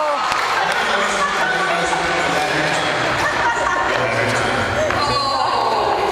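Crowd of guests talking and laughing over one another, with a few dull thumps. About five seconds in, one voice calls out, its pitch falling.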